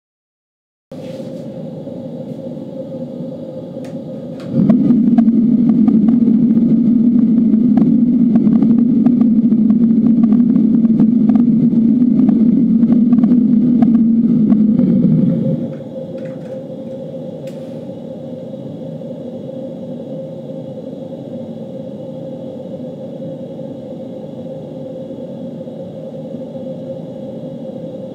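A fan running steadily through a 3D-printed PLA silencer. About four and a half seconds in, the silencer comes off and the fan becomes much louder with a deep rumble. About eleven seconds later it is refitted and the noise falls back to the quieter, steadier hum with a light tone.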